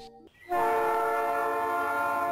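Train horn sounding one long, steady multi-note chord. It starts abruptly about half a second in.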